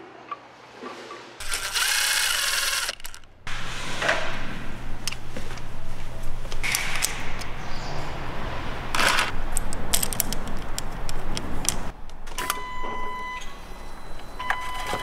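Engine reassembly work: metal parts and hand tools clicking and knocking over a steady low hum. A short loud hiss comes about one and a half seconds in, and a steady whine sounds near the end.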